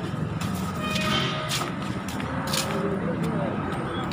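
A steady low rumble like passing road traffic, with faint voices in the background and a few sharp clicks.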